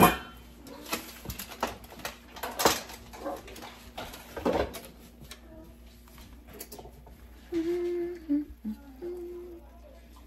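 Scattered knocks and clinks of kitchen utensils and the roaster lid being handled, the loudest right at the start. Near the end a person hums two short level notes.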